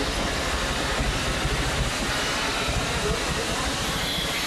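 Amusement-park train's steam-style locomotive rolling past close by, a steady rumble of its wheels on the track.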